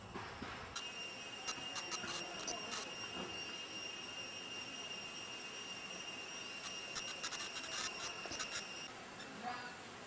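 A steady high-pitched whine with overtones and scattered crackling clicks, starting suddenly about a second in and cutting off abruptly near the end.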